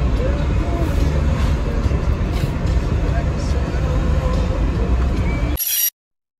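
Steady low road and engine rumble inside a moving passenger vehicle's cabin, with faint voices of passengers under it. Near the end it cuts off after a brief burst of hiss.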